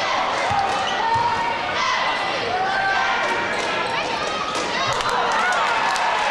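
Basketball dribbled on a hardwood gym floor, a few low thumps, under a steady babble of spectators' voices and shouts echoing in the gym.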